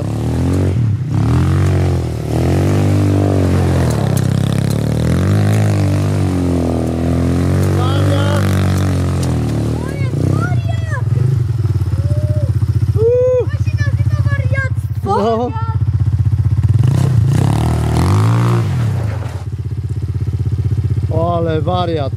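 Sport quad's engine revving up and down as the quad is slid round in tight circles on loose dirt. Voices call out in the middle and near the end.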